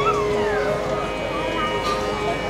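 Live Carnatic classical music: an ornamented melodic line that glides down in pitch with wavering slides over a steady drone, and a light percussive stroke near the end.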